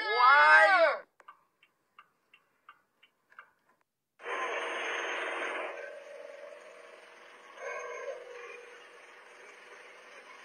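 A voice ends in the first second, then a few faint ticks. About four seconds in, steady cabin noise of a minibus taxi starts, loudest for its first second and a half and then lower, with a hum running through it.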